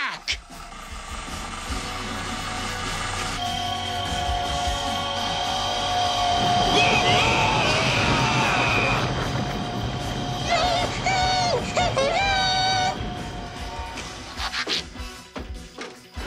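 Cartoon sound effect of an electronic harmony: sustained chord tones with warbling, sung-like glides over them. From about six seconds in, a low rumble builds under it as the harmony cracks open the ground, and the sound fades away near the end.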